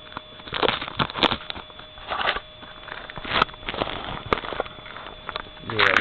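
Packing tape being peeled off a cardboard box, heard as several short crackling tears a second or so apart.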